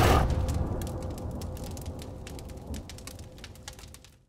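The fading tail of an animated logo sting's sound effect: a low rumble dying away under scattered crackles, with a faint steady tone, until it cuts to silence at the end.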